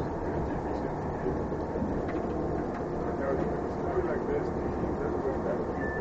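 Bus running, with a steady engine and road rumble heard from inside the cabin and faint voices over it.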